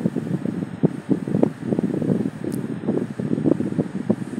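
Indistinct store background noise: an uneven low rumble of activity, with rustling on the handheld phone's microphone as it moves through the aisles.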